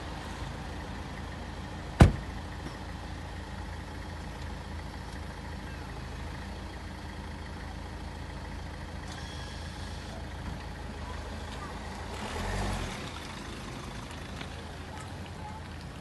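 A car door slamming shut about two seconds in, one loud thud, over a steady low rumble. About twelve seconds in, a brief low swell of engine noise comes as the Peugeot 3008 SUV moves off.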